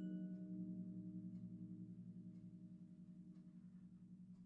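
Concert harp's last low notes ringing on after being plucked and slowly dying away, with a steady pulsing waver in the tone.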